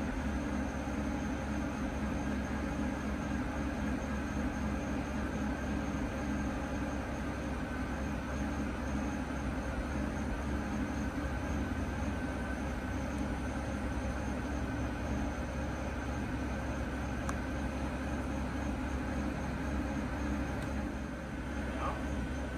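Steady running hum of a 2007 Mercedes-Benz S600's twin-turbo V12 at idle while its Active Body Control hydraulic suspension raises the car.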